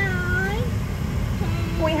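A voice over the airliner's cabin PA holds one drawn-out, meow-like syllable for about half a second, dipping and then rising in pitch. It sits over the steady low hum of the parked 737 cabin, and the safety announcement's speech picks up again near the end.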